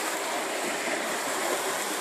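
Running water, a steady rushing hiss.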